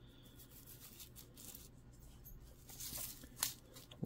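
Faint rustling and scraping of a thin photo-etched brass sheet being handled and slid over paper, with a few louder brushes about three seconds in.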